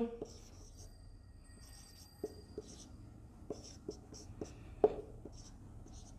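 Dry-erase marker writing on a whiteboard: faint, irregular taps and short squeaky strokes as digits are written.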